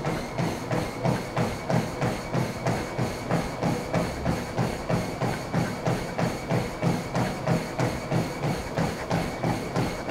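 Running footfalls pounding a Sole F89 treadmill's belt and deck at 8 mph, an even rhythm of about three thuds a second, over the steady whine of the treadmill's drive motor and belt.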